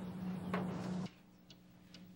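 Outdoor background noise cuts off abruptly about a second in, giving way to a quiet room where a clock ticks faintly, about twice a second.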